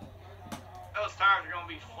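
A man speaking in the second half, over a faint steady low hum, with one short click about half a second in.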